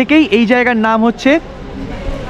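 A man's voice speaking for about a second and a half, then quieter, steady street background noise.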